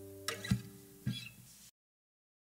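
The soundtrack song's last guitar chord dying away, with a few short knocks, before the sound cuts off to silence near the end.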